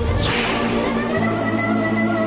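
A whip-like swish sound effect falling quickly in pitch right at the start, the kind of dramatic sting used in TV serials, over background music that settles into sustained notes about a second in.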